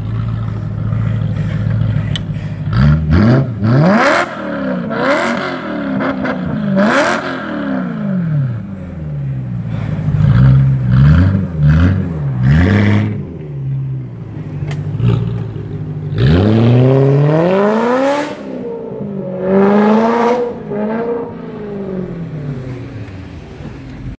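BMW E92 M3's V8 revved hard in a series of short blips, the pitch rising and falling with each one. Later comes a long climb in revs as the car takes off, then a second rise after a gear change, and the sound fades toward the end.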